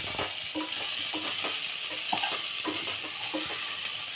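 Slotted wooden spatula stirring and scraping rice and green peas frying in a metal pot, with irregular scrapes and light knocks over a steady sizzle.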